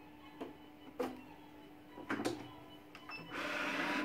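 A few sharp clicks and knocks as the transfer sheet is set in a vinyl cutting plotter. About three seconds in, the plotter's motors start with a steady whirr as the carriage and sheet begin to move.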